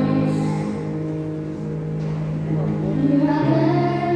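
Slow worship-song backing music with long held chords, and a singing voice coming in near the end.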